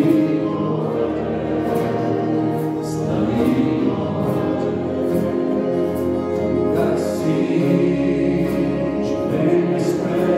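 Worship band playing: several voices singing together over strummed acoustic guitars and keyboard, with held notes and a bass line that comes in about a second in.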